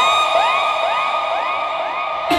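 DJ siren sound effect: a steady high electronic tone with quick upward swoops repeating about three times a second, played while the bass of the music drops out.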